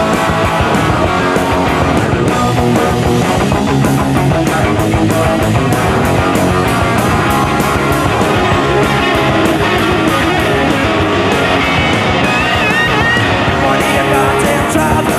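Punk rock band playing live and loud: distorted electric guitars, bass and a fast, steady drum beat with cymbal hits. A wavering high note comes in near the end.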